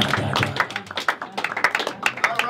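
A small audience clapping in irregular, scattered claps at the end of a spoken-word poetry reading, with a few voices mixed in.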